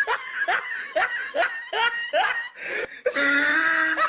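A person laughing in quick repeated bursts, about three a second, breaking into a long held note near the end.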